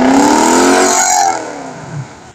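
A car engine revved hard, its pitch climbing and then easing back down. It is loud for over a second, then drops away.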